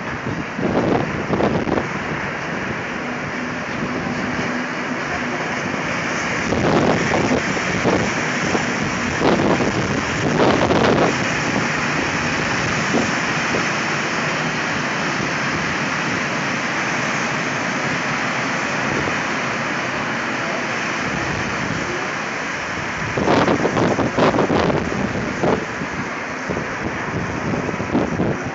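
Weed-removal train hauled by DR class 203 diesel locomotives passing: a steady rumble of wheels on rail with the diesels running, broken several times by clusters of clattering.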